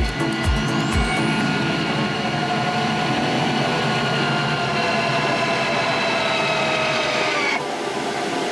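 Electric landing-gear motor of a Schempp-Hirth Arcus glider retracting the gear, a steady whine that sinks slightly in pitch over the last few seconds and cuts off suddenly just before the end, over cockpit airflow noise.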